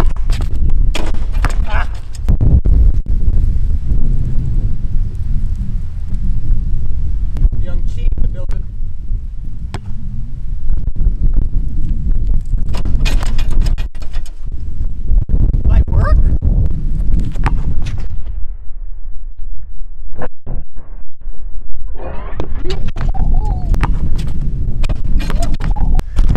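Wind rumbling on the microphone, cut through by sharp knocks of a basketball bouncing on asphalt, with a voice heard in the last few seconds.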